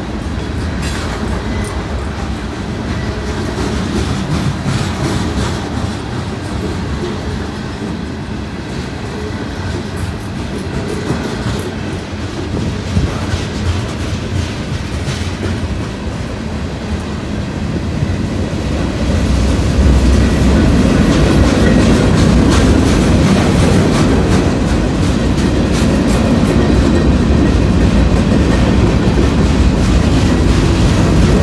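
CSX freight cars rolling past close by: a steady rumble of steel wheels on rail with repeated clicking and clacking. It grows louder about two-thirds of the way through.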